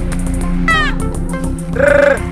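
Hip-hop beat with a steady bass line, over which a goat bleats: a short falling cry under a second in, then a louder, wavering bleat near the end.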